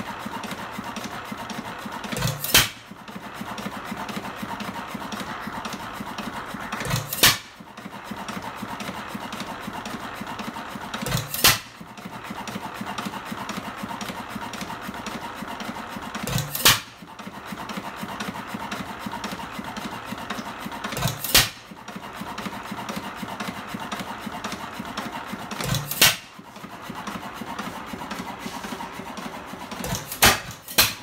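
IHC 3 HP vertical screen-cooled engine running on its hit-and-miss governor: a loud sharp bang as it fires about every four and a half seconds, six times, with a steady mechanical clatter as it coasts on its flywheels between firings.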